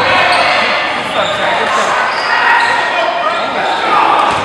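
Echoing gym noise during a basketball game: many crowd voices talking and calling out at once, with the ball bouncing on the hardwood court.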